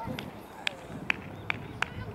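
Five short, sharp clicking impacts, about two to three a second, the loudest about a second in, over the faint outdoor noise of a game with distant voices.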